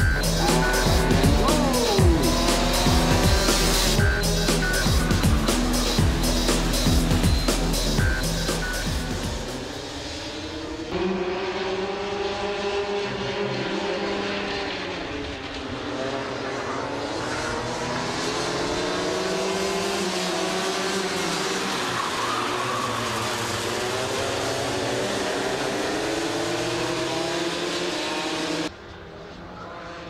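Electronic music with a steady beat for roughly the first ten seconds, then racing kart engines: several karts' engines revving up and down together as they take the corners. Near the end the engine sound drops suddenly in level and carries on more quietly.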